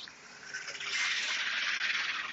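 A vehicle driving past on the road, its tyre and road noise swelling about half a second in and fading near the end.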